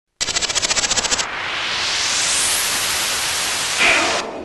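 Produced sound-effect opening: a rapid rattle of clicks, about twelve a second, for about a second, then a hiss of noise that rises in pitch like a whoosh, swelling, with a brighter burst near the end.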